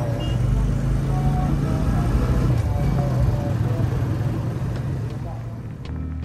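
Motorcycle engine running steadily with several riders and luggage aboard, a low constant drone, with faint voices over it.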